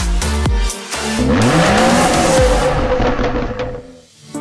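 After about a second of electronic dance music with a heavy kick beat, a car sound effect takes over: an engine revving up in pitch with a rushing whoosh and tyre squeal, fading out near the end.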